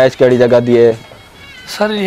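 A man's voice in long, level, almost sung vowels, breaking off about a second in; a second, higher-pitched voice comes in near the end.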